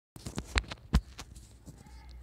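A quick string of irregular clicks and knocks, about seven in under two seconds, the loudest about half a second and a second in. It sounds like device or microphone handling noise as the recording starts.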